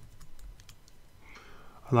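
Several light keystrokes on a computer keyboard in about the first second, typing code.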